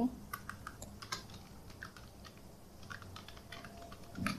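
Computer keyboard being typed on: quiet, irregular key clicks.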